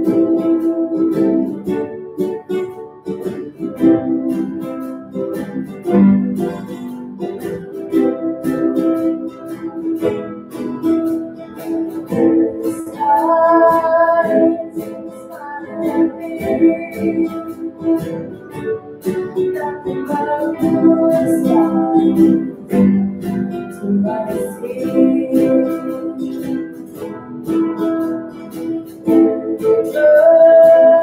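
A small ensemble of acoustic guitars playing a song live, strummed and picked, with singing in places.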